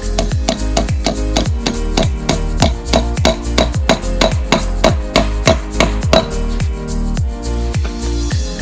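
Upbeat electronic background music with a steady kick drum. In the middle, for about four seconds, a run of quick, sharp taps sounds over it: a hammer driving a sap spile into a maple trunk.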